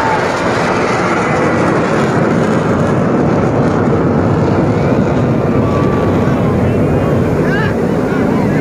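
Aircraft flying over, its engine noise loud and steady throughout, with crowd voices underneath.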